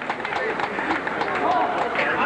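Men's voices calling out and talking over a karate bout, with a few short knocks.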